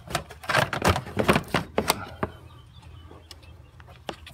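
Pleated paper air filter being pulled out of a Toyota Corolla's plastic airbox: a quick run of rustling and scraping with a few sharp clicks over the first two seconds, then it goes quiet.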